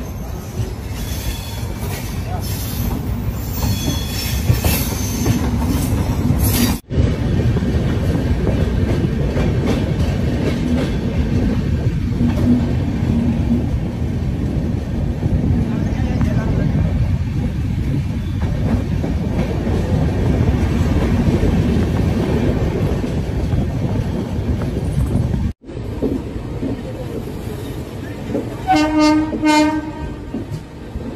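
Moving passenger train heard from its open doorway: steady rumble of wheels on the track, with high wheel squeal in the first few seconds. Near the end a train horn sounds, in a wavering series of blasts.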